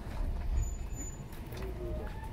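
Low, steady running rumble heard inside the passenger car of a JR West 223 series 1000 electric train as it moves slowly along the platform.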